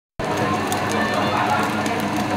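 Cubes of marbled wagyu sizzling and crackling on a hot slotted yakiniku grill plate, starting a moment in, with voices talking in the background.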